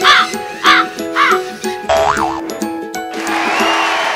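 Background music with a cartoon crow sound effect cawing three times, followed by a short rising-and-falling comic sound and then a rush of noise near the end.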